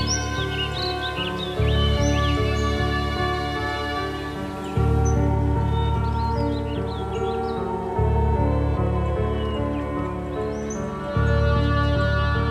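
Slow, gentle background music of held tones, with a deep low note that swells in about every three seconds. Small birds chirp over it.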